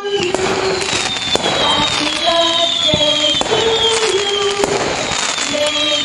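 Fireworks sound effect, with pops and dense crackling and several whistles falling in pitch, laid over a music melody.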